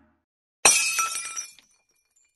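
Glass shattering sound effect: one sharp crash about two-thirds of a second in, followed by about a second of tinkling shards dying away.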